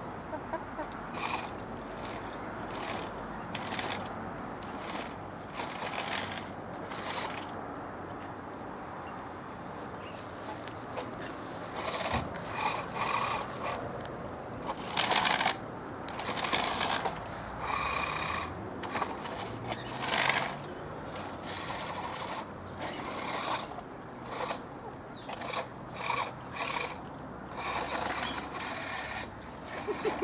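Hens pecking feed from a small metal bowl, an irregular string of sharp taps and clicks, busier in the second half.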